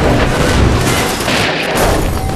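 A car dropped from cables slamming nose-first onto another car: a loud metal crash, with a second burst of crashing about one and a half seconds in.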